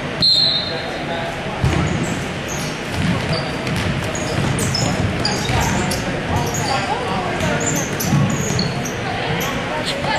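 Basketball bouncing on a hardwood gym floor during live play, with repeated thumps, and sneakers squeaking in short high chirps throughout. A brief steady high tone sounds just after the start.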